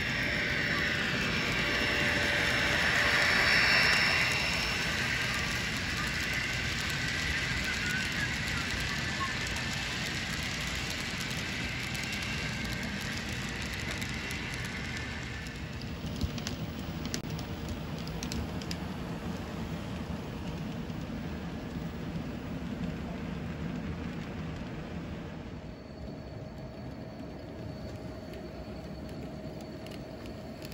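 N scale model trains running on layout track: a steady whirring and wheel-on-rail rattle that is loudest about three to four seconds in as a locomotive passes close, then fades, with scattered light ticks later on.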